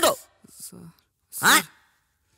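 A man's short vocal 'ooh' about a second and a half in, following the tail of a spoken word at the start, with near quiet in between.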